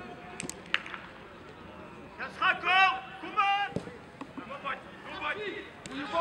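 Footballers shouting calls to each other on the pitch, loudest around the middle, after a few sharp knocks of the ball being kicked about half a second in.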